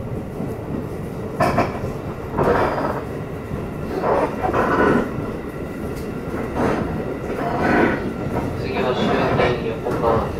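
Running noise inside a JR East Shin'etsu Line train car: a steady rumble of wheels on rail with some clatter. Voices are heard over it every second or so.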